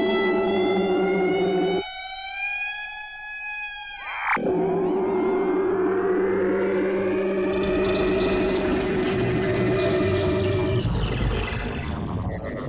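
Electroacoustic music for clarinet and electronic tape. A steady held tone runs under slowly gliding higher tones and drops out about two seconds in; a sharp click near the middle brings it back. Arching, siren-like glides follow, with a noisy wash building up that breaks apart near the end.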